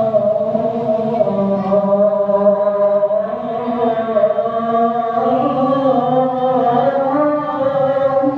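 A man's voice singing the adhan, the Islamic call to prayer, into a microphone. The notes are long and drawn out, with slow ornamented turns in pitch.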